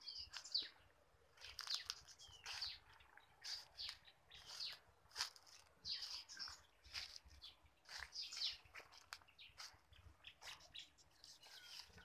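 Birds chirping faintly, many short, high calls repeated one after another.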